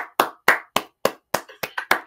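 Hand claps in a quick, uneven run of about three or four a second, a little faster near the end.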